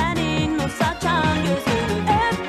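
Pop song with a woman singing over a backing track with a steady beat.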